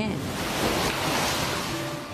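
Steady rushing noise of hurricane floodwater and storm wind, an even hiss with no pitch.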